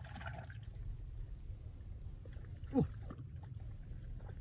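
A man's short exclamation, falling quickly in pitch, about three seconds in, over a steady low rumble.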